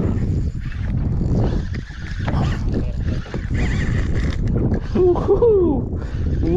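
Steady low rumble of wind and sea noise on the microphone. About five seconds in, a man's voice rises and falls in a wavering, wordless hum.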